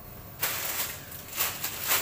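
Butter sizzling in a hot frying pan on a gas burner: a crackling hiss that starts suddenly under half a second in and carries on.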